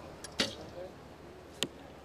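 Recurve bow shot: a small click, then a sharp snap as the string is released, and a second short, sharp knock a little over a second later as the arrow strikes the target.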